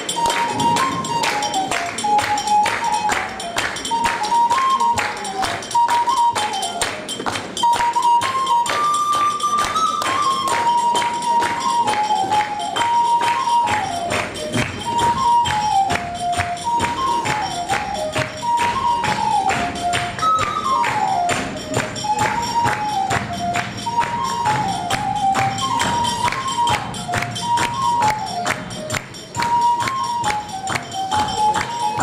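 A lively folk tune played on a small shrill wind pipe, one melody line moving up and down in short steps, over fast, steady clicking percussion.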